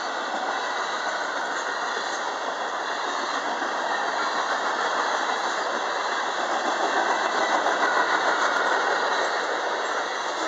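Freight cars of a manifest train rolling past: the steady noise of steel wheels on the rails with their rattle, swelling a little louder about seven seconds in.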